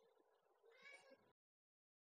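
Near silence with one faint, short pitched call a little over half a second in, after which the sound cuts off to dead silence.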